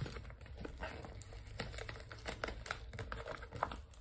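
Paper bag crinkling in the hands as it is handled and opened at the top, a quick run of small crackles.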